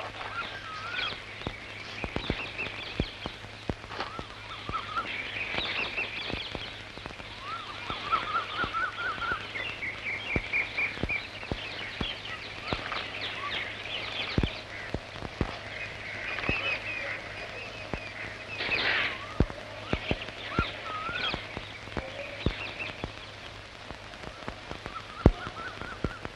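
Small birds chirping and calling in short, repeated phrases, with scattered sharp clicks and a steady low hum underneath.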